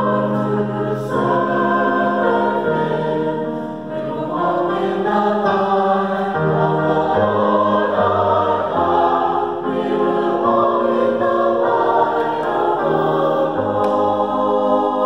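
Mixed-voice choir of men and women singing a choral anthem in harmony, holding chords that change every second or two, accompanied on a digital piano.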